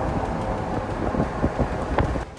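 Steady low rumbling road and wind noise from a moving vehicle, with faint scattered crackles.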